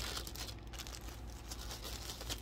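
Faint crinkling and rustling of a plastic bag as a skein of yarn is pulled out of it, with a few brief crackles.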